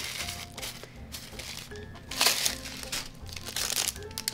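Plastic wrapping of a trading pin crinkling in a few short rustles as it is opened, the loudest about two seconds in, over soft background music.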